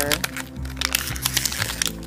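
Crumpled white packing wrap crinkling and rustling in quick, irregular crackles as a hand rummages through it, over steady background music.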